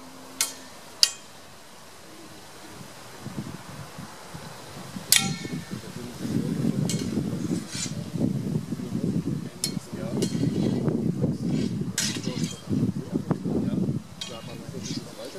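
Steel broadswords clashing during sparring: several sharp metallic clashes, each ringing briefly, about seven in all and spread irregularly. From about three seconds in, a loud, irregular low rumble runs underneath.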